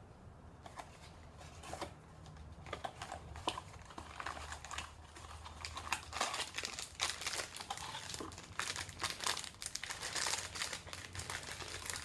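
Packaging being handled as a small cardboard mystery box is opened and the wrapped figure inside is unwrapped: irregular crinkling with small clicks and crackles, getting busier and louder about halfway through.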